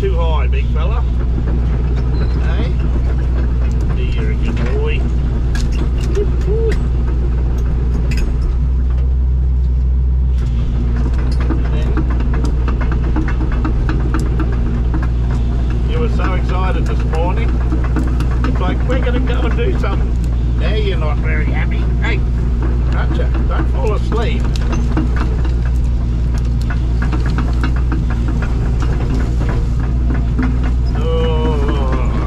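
Excavator engine and hydraulics running steadily under load, heard from inside the cab. The low engine note rises for a couple of seconds around nine seconds in, and short wavering higher whines come and go over the top.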